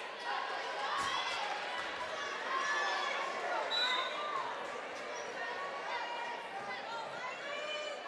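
Gymnasium crowd and players' voices during a basketball game, many people talking and calling out at once, with a few basketball bounces on the hardwood court.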